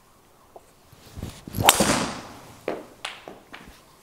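A full driver swing: a swish of the club through the air, then one sharp, loud crack as the driver head strikes the ball, which drives straight into the simulator's impact screen. A few lighter knocks follow over the next two seconds.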